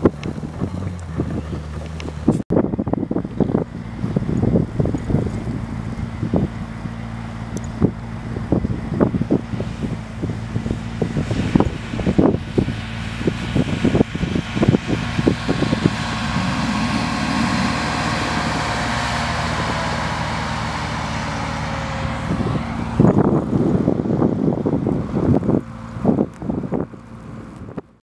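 Bentley Continental GTC's W12 engine running under throttle as the all-wheel-drive car slides through snow, its note held up for several seconds in the middle and then slowly falling. Wind gusts buffet the microphone throughout.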